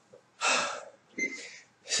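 A man breathing hard and out of breath after an all-out high-intensity interval: two heavy, gasping breaths, the first the louder.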